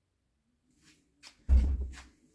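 A few light clicks, then one loud knock about one and a half seconds in, with a short rattle after it, as a sharpening stone is lifted off its holder.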